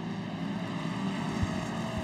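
Engines of Pro Modified side-by-side UTV race cars running at speed on a dirt track, heard as a steady drone. There is a short tick about halfway through.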